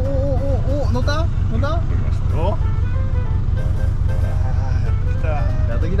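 Boat engine running with a steady low drone, under background music with a wavering melody and a few quick rising swoops.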